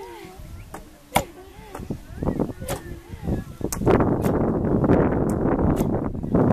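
Long wooden pestles pounding maize in wooden mortars, two women working at once, giving sharp, irregular knocks. Voices are heard alongside, louder and denser from about four seconds in.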